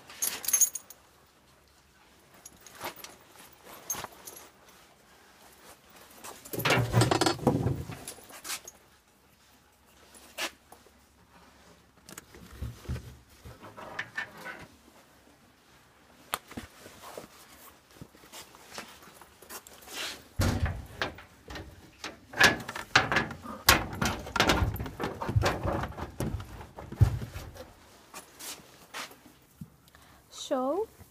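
Riding tack and gear being handled and moved around in a stable locker: scattered clicks and knocks of metal buckles and fittings with rustling. There is a louder bout of handling about seven seconds in, and a busy run of knocks and thumps in the last third.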